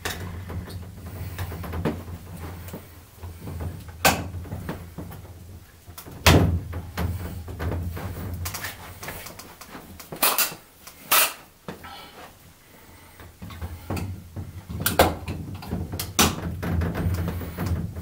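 A large plexiglass display cover being handled with suction-cup lifters: scattered sharp knocks and clicks, a few seconds apart, over a steady low hum.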